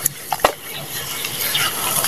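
Hands squeezing and kneading wet sand in a tub of muddy water: wet squelching and sloshing with small crackles, and a sharp click about half a second in.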